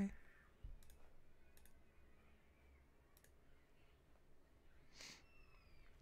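Near silence, room tone, with a few faint clicks in the first few seconds and a brief soft hiss about five seconds in.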